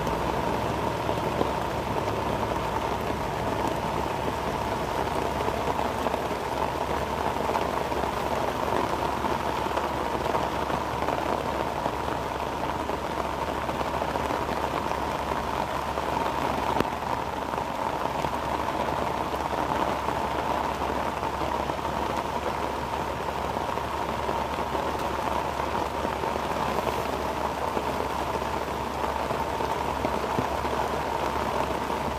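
Heavy rain falling steadily.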